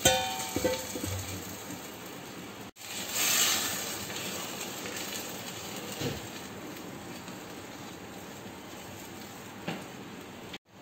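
Tamarind dry fish curry (karuvadu kulambu) heating in a clay pot with a steady hiss, while a wooden spatula is stirred through it. A short ringing clink at the very start, and a louder burst of hiss about three seconds in.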